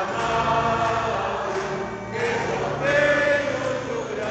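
Choir singing a Portuguese-language hymn in long held notes, swelling louder about three seconds in.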